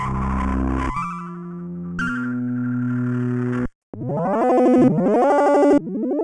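SEELE Abacus waveshaping software synthesizer playing its 'Microtonal Chiptune' presets: a dense, dirty tone for about a second, then held buzzy notes that step in pitch, then after a short break a run of repeated upward pitch sweeps and a new note that rises and holds near the end.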